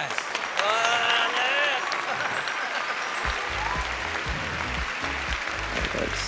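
Audience applauding and cheering, with an excited shout in the first two seconds. Backing music with a low bass beat comes in about halfway through.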